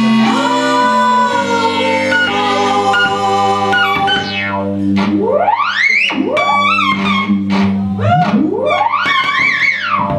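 Live band music led by an electric keyboard: held notes for the first few seconds, then from about five seconds in a series of steep rising pitch sweeps.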